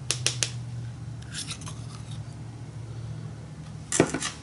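Small palette knife tapping and scraping on a plastic palette and paint jar as yellow acrylic paint is scooped out and spread: three quick clicks at the start, a few short scrapes about a second and a half in, and a sharper click near the end.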